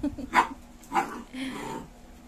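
A dog giving a few short, sharp barks, about half a second apart.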